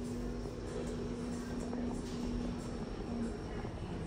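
Inside a Kone EcoSpace elevator car with its doors open: a steady low hum. It stops about three seconds in and briefly comes back.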